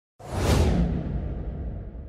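A whoosh sound effect from an animated logo intro. It comes in suddenly, peaks about half a second in, then fades, leaving a low rumble underneath.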